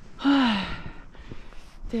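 A woman's breathy, voiced sigh, falling in pitch, about a quarter-second in: a heavy exhale of exertion while climbing uphill through snow.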